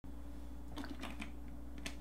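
A plastic drink bottle being handled and lowered: a few faint clicks and taps, the sharpest just before the end, over a steady low hum.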